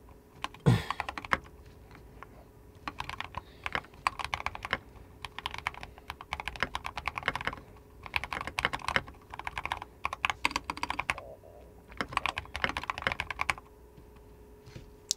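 Typing on a computer keyboard: several quick bursts of key clicks with short pauses between them, and one heavier knock about a second in.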